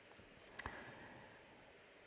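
A single short, sharp click about half a second in, over otherwise faint room tone.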